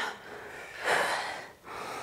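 A woman breathing hard with effort while lifting a dumbbell: one forceful breath about a second in, with fainter breathing near the end.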